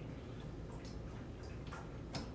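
A few faint clicks of a metal fork against a ceramic plate while eating, over a low steady room hum.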